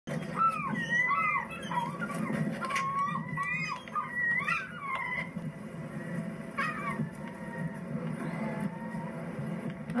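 A series of short, high animal calls, each rising and falling in pitch, over a steady low hum. The calls come thickly for about five seconds, then once more near the seventh second.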